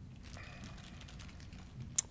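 Low room hum through the meeting microphone, with faint small ticks and rustles and one sharp click at the very end.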